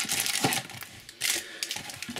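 Foil-wrapped trading card packs rustling and crinkling as a handful is pulled out of a cardboard display box, in two bursts with light clicks of pack against pack and cardboard.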